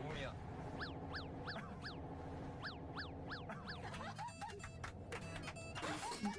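Quiet background music from the video being watched, with a quick run of about eight short chirps that rise and fall in pitch in the first half and a little faint speech near the end.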